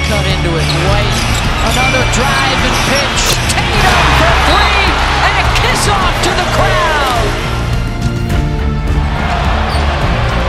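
Basketball game sound from the arena under background music: a ball dribbling on a hardwood court with short squeaks and clicks, and crowd noise swelling about four seconds in.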